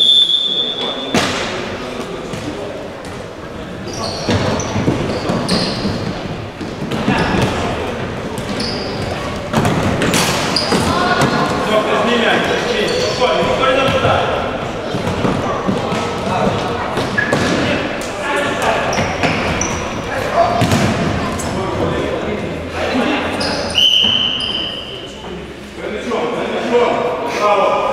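Referee's whistle, two single steady blasts about a second long, one at the start and one near the end, over players' shouts and the thuds of a futsal ball being kicked and bouncing on a wooden hall floor, all echoing in a large sports hall.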